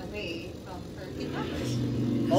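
Movie trailer soundtrack played back: a voice with a motorbike engine, whose steady low note comes in about halfway and grows louder.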